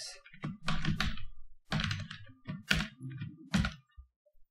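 Computer keyboard being typed on: irregular short runs of key clicks with brief pauses between them.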